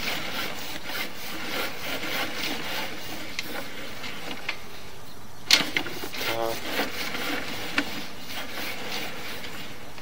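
Sewer inspection camera's push cable being fed out down the line, rubbing and scraping steadily, with one sharp click about halfway through.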